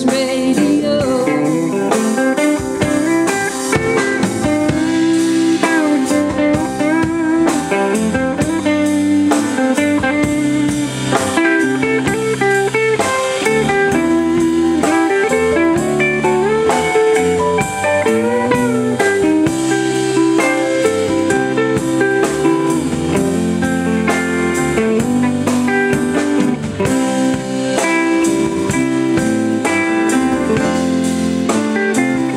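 Live band playing a blues-style instrumental passage: a guitar lead with bending notes over bass guitar, keyboard and drums.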